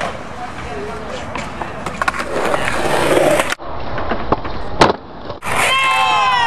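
Skateboard wheels rolling on concrete with clacks of the board, growing louder, then a sharp crack. Near the end a voice yells, falling in pitch.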